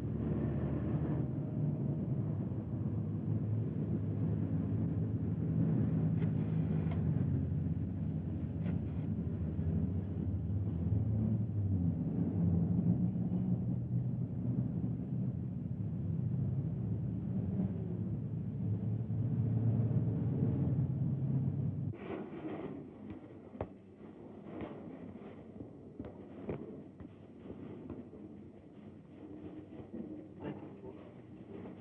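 City street traffic: car engines running and passing vehicles in a steady rumble that cuts off abruptly about two-thirds of the way through. What follows is much quieter, with scattered clicks and knocks.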